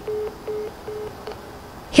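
Phone beeps signalling a dropped or ended call: three short tones of one pitch, about 0.4 s apart.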